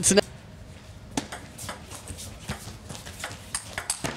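Table tennis rally: the celluloid ball is struck by the rackets and bounces on the table, making a string of sharp clicks from about a second in, against a low arena background.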